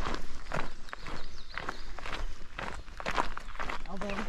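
Footsteps of a hiker walking on an asphalt road, a steady pace of about two steps a second.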